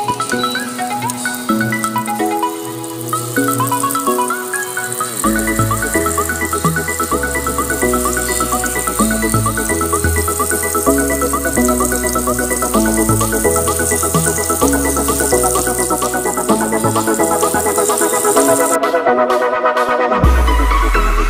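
Background music: a repeating melody of short pitched notes, with a low bass line coming in about five seconds in.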